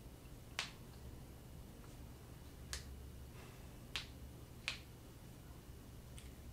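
Four short, sharp clicks, unevenly spaced, over a low steady hum.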